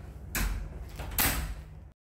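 Hotel room door being shut, with two sharp knocks about a second apart.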